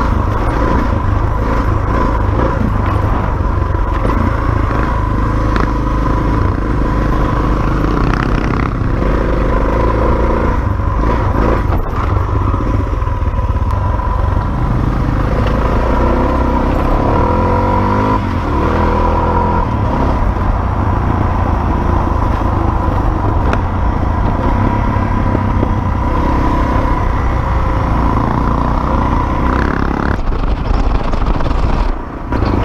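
Dirt bike engine running hard on a sandy trail, heard from a camera on the bike, with wind and the clatter of tyres on dirt and gravel mixed in. The engine note rises and falls with throttle and gear changes.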